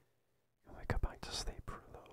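A man whispering close to the microphone for about a second and a half, starting just over half a second in, with a few sharp clicks among the breathy sound.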